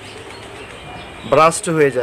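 A pause in a man's speech with only low background and a faint bird call, then his voice comes back in about a second and a half in.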